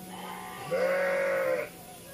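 A single bleat from a farm animal, about a second long, rising slightly in pitch and falling away at the end.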